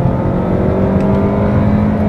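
Chevrolet Malibu's 2.0-litre turbocharged four-cylinder engine pulling under acceleration, heard from inside the cabin, its pitch rising slowly and evenly.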